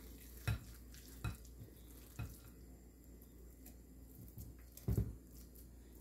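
Plastic scoop working a raw ground-beef mixture out of a glass bowl and into a bell pepper: a few soft, scattered knocks and scrapes, the loudest a double knock about five seconds in.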